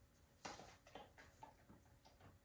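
Near silence: room tone with a few faint short ticks.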